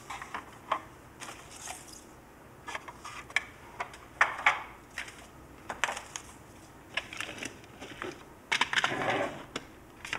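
Small tools and parts being picked up and set down on a workbench: scattered light clicks and clatters, with a longer, louder burst of handling noise near the end.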